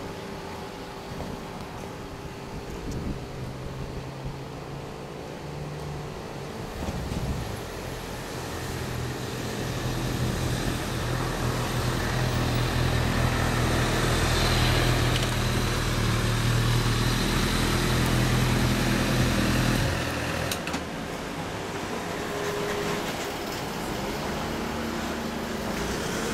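A motorcycle engine running at low revs, growing louder through the middle, then shut off suddenly about twenty seconds in; a quieter engine hum carries on afterwards.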